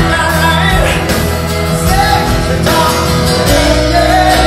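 Live rock band: a male lead singer singing over acoustic guitar, bass and drums.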